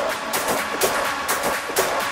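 Electronic house/techno track playing: an even percussion pattern about four hits a second over sustained synth tones, with the bass drum dropped out.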